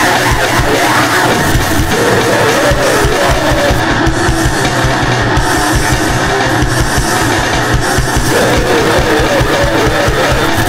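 A noisegrind recording: a dense, loud wall of distorted noise over very fast, rapid-fire drumming, with a wavering pitched line that comes in about two seconds in and returns near the end.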